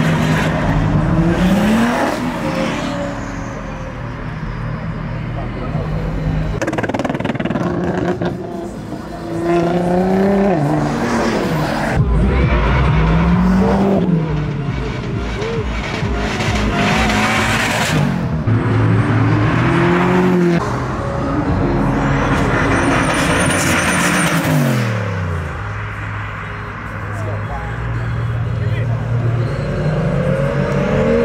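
Several performance car engines revving hard and accelerating away one after another, each run climbing and dropping in pitch, with a steep fall in revs about 25 seconds in.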